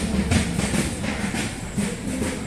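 Percussion accompaniment: a drum beaten in a steady, fast rhythm, about three strikes a second.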